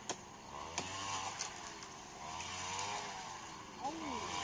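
Faint engine of a passing motor vehicle, its pitch rising and falling slowly, with a few soft clicks.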